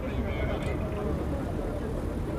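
Indistinct voices of people talking at the scene over a steady low rumble of vehicle engines and street traffic.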